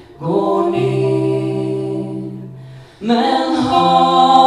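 Voices singing a Swedish ballad live, holding long notes. The phrase fades and dips just before three seconds in, and a new sung phrase starts straight after.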